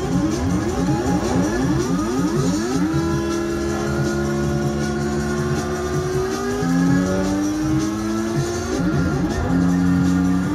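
Live band music without vocals: a lead instrument plays a run of quick rising slides for the first few seconds, then long held notes over the backing.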